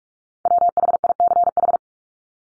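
Morse code tone sending one word at 45 words per minute: a single steady pitch keyed in a quick run of dits and dahs, starting about half a second in and lasting a little over a second.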